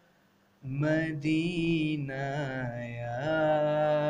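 A man singing a long, drawn-out wordless melodic line in an Urdu devotional naat, with the pitch sliding and bending. He comes in about half a second in, after a moment of near silence, over a steady low hum.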